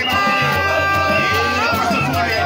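Isukuti dance music: singing and drumming amid a crowd. Two steady high notes are held until about one and a half seconds in.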